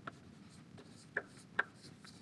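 Chalk writing on a blackboard: three short, sharp taps and strokes, one near the start and two more after about a second, over a quiet room.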